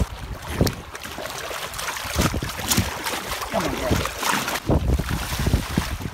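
Water splashing irregularly as a hooked tiger shark thrashes at the surface against the side of a boat, with wind buffeting the microphone.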